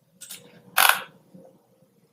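Computer mouse clicking: a faint click, then a louder, sharper click just under a second in.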